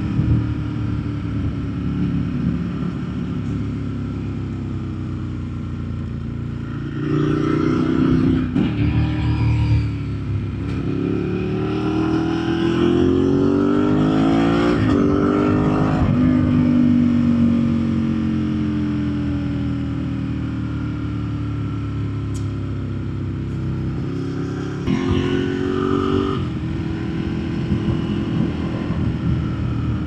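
Ducati 1098S sport bike's L-twin engine running under way. It pulls harder about seven seconds in and climbs in pitch for several seconds before dropping sharply, then runs steadier and eases off before opening up again near the end.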